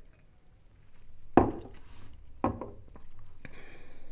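Two light knocks of a glass being handled on a tabletop, about a second and a half in and again a second later, then a fainter tap, during a whiskey tasting.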